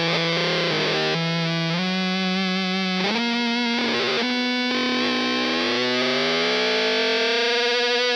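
Electric guitar through a Z.Vex Fuzz Probe and a Dr. Z Route 66 amp, playing heavily fuzzed, sustained notes that change in steps. From a little past the middle, one held note slides slowly upward in pitch, a theremin-like sweep worked by the hand over the pedal's copper antenna plate.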